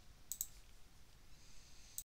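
Faint computer mouse clicks: a quick pair about a third of a second in, and one more right at the end.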